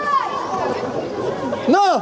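Voices of players and spectators at a youth football match, chattering and calling out, with one loud high-pitched shout near the end.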